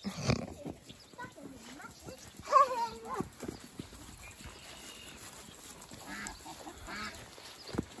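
A farm animal calls once, briefly, about two and a half seconds in, over a quiet outdoor background with faint scattered sounds.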